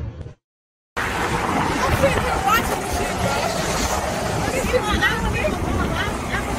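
Sound cuts to silence for about half a second, then highway traffic noise comes in with indistinct voices talking over it.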